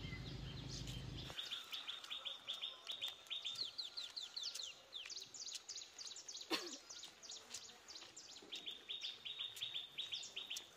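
Small birds calling: rapid trills of short, high chirps, repeated several times, with one sharp call sweeping downward about six and a half seconds in. A low rumble at the start stops abruptly just over a second in.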